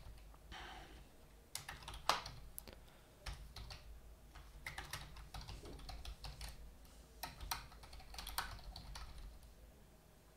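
Typing on a computer keyboard: faint, irregularly spaced keystrokes entering a short line of text.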